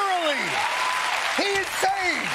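Studio audience applauding loudly, with several short wordless shouts of a man's voice over the applause.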